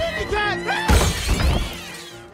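Window glass shattering: a sudden, loud crash about a second in that rings on for about half a second, over background music.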